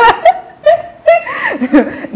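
A woman laughing in several short bursts.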